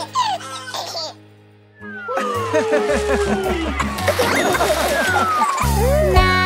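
Children's cartoon music with a baby's voice giggling near the start. The music drops to a brief lull about a second in, then a new children's song starts up with a bouncy bass line and sliding tones.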